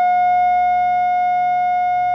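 A steady electronic tone at 720 cycles per second, the note F-sharp, held unwavering at an even level.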